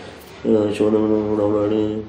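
A man's voice holding one long, steady vowel for about a second and a half, starting about half a second in, with no words.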